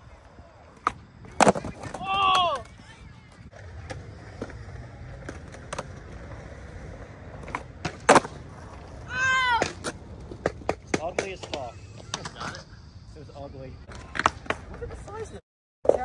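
Skateboard tricks off a concrete ledge: two loud wooden cracks of the board on concrete about six and a half seconds apart, each followed within a second by a short shout. Lighter clacks and rattles of the board follow.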